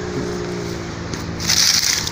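Dry leaves and twigs rustling and crackling close to the microphone for the last half second or so, after a steady low hum.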